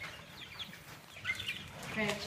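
Chicks peeping: a few faint, short, high chirps.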